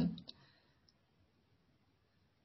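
A woman's speaking voice trails off, then a pause of near silence with a few faint, soft clicks in its first second.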